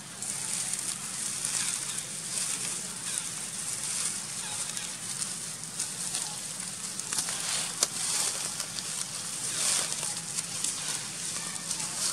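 Dry leaf litter crackling and rustling as crab-eating macaques scramble and scuffle over it, over a steady high hiss, with a sharper crackle about eight seconds in.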